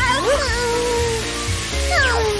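Background music with a cartoon character's short vocal sound that rises and then holds from about a third of a second in, over a steady hiss of a fire hose spraying water.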